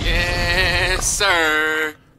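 Two long, wavering sung notes over a low bass beat, the second sliding down at its end, then cut off suddenly.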